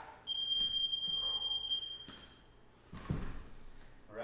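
Electronic interval-timer beep: one steady high tone lasting nearly two seconds, marking the end of a work interval. About three seconds in comes a dull thump as dumbbells are set down on the floor.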